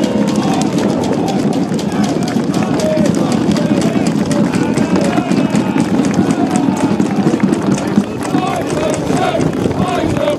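Crowd of spectators talking and calling out, over a dense clatter of quick taps.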